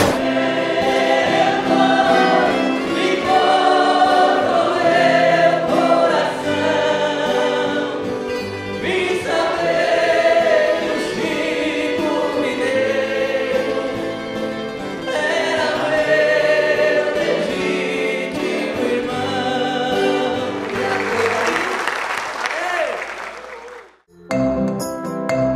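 A viola caipira orchestra with many voices singing together in a country (caipira) style, holding long notes over the instruments. Applause rises over the music near the end before it fades out.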